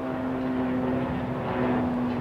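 A steady motor drone holding one low pitch.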